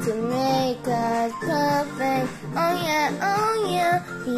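A child singing a song over backing music, holding notes and sliding between pitches.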